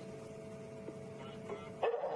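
African wild dog giving a short hoo call near the end, a contact call to the rest of its pack, over a faint steady hum.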